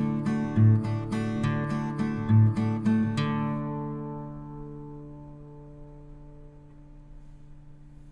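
Background music on acoustic guitar: steadily plucked notes, then a final chord a little after three seconds in that rings on and slowly fades away.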